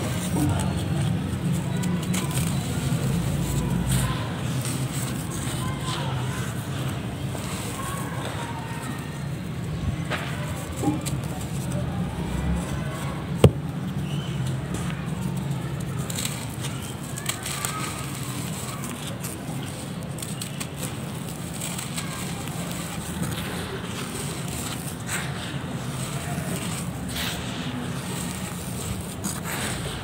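Dried mud lumps being crushed by hand, crunching and crackling as they break into dusty grit, with one sharp crack near the middle, over a steady low background rumble.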